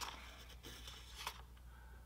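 Faint scratching of a pencil on paper in the first half-second, then quiet room tone with a steady low hum and a small tick about a second in.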